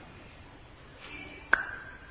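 A single sharp ping about one and a half seconds in, with a short ringing tone that dies away within half a second, over faint background hiss.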